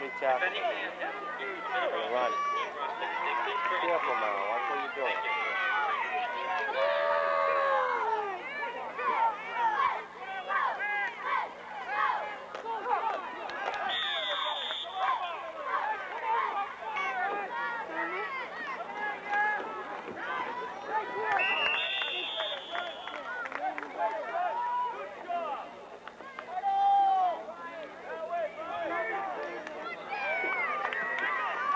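Spectators on the sideline talking and calling out, many voices overlapping. A referee's whistle blows briefly about halfway through and again a few seconds later.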